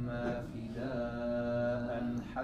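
A man reciting the Quran in Arabic in a melodic chanting style, his voice moving briefly and then holding one long steady note through most of the second half.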